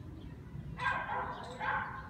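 Two short animal calls, the first about a second in and the second half a second later.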